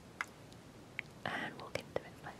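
A short, soft breathy sound from a person close to the microphone, with a few faint clicks before and after it.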